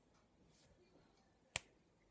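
Near silence broken by a single sharp click about one and a half seconds in.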